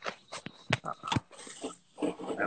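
A run of short, irregular clicks and taps, about a dozen in two seconds, with no rhythm.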